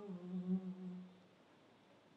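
A single voice hums a low held note at the close of a chanted mantra phrase and fades away about a second in, leaving near silence.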